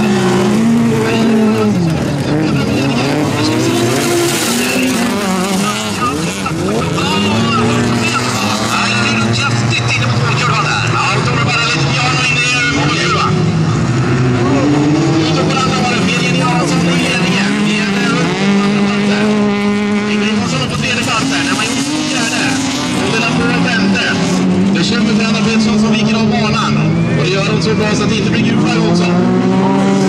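Several bilcross race cars' engines revving hard on a dirt track. Their overlapping engine notes climb and drop again and again with each gear change and lift for the corners.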